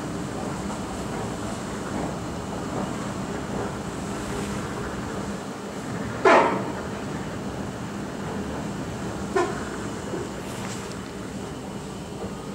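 Steady hum and rumble of a metro station's machinery and a running escalator. A loud, short sound cuts in about six seconds in, and a smaller one about three seconds later.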